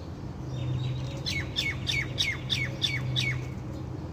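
A bird calling: a quick series of about seven sharp notes, each falling in pitch, roughly three a second, that starts about half a second in and stops near the end. A low steady hum runs underneath.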